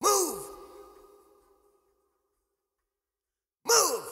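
Isolated lead vocal: a breathy vocal cry sliding down in pitch, heard twice about three and a half seconds apart, each fading away over a second or so, with silence between.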